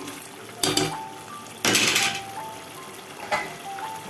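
A steel spoon scraping and knocking in a metal pot of thick curry three times, the loudest a long scrape about two seconds in. Under it runs a simple background melody of single high notes.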